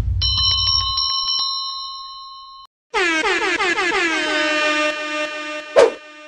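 Subscribe-button animation sound effects. First a high bell-like ring with a quick run of clicks, fading away over about two and a half seconds. Then a loud, sustained, horn-like chord of many tones that dip slightly in pitch as they start, with a sharp click near the end.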